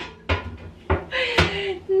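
A metal oven tray knocking and clattering in the oven, three sharp knocks; the tray is too small for the oven. A woman's voice lets out a falling groan over the last knock.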